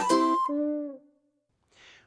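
The last held chord of a sung intro jingle, fading out about a second in, followed by near silence and a short faint hiss just before the narration begins.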